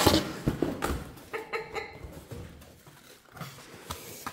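Cardboard scraping and rustling as a cardboard box is pulled out of a shipping carton, with a few knocks and a brief squeak, loudest at the start and growing quieter.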